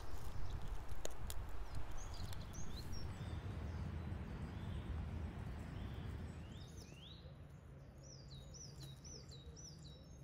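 A small songbird calling, with a few faint chirps early and a quick run of about five falling notes near the end, over a low outdoor rumble that slowly fades.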